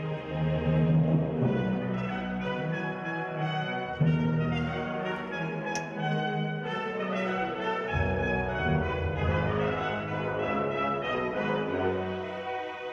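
Symphony orchestra playing sustained notes: low bowed double basses and cellos, with French horns prominent. The full orchestra comes in louder about four seconds in.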